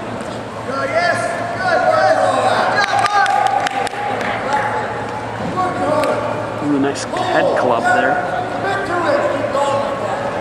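Voices calling out across a gymnasium during a wrestling bout, with a few sharp smacks from the wrestlers' hand-fighting about three seconds in and again near seven seconds.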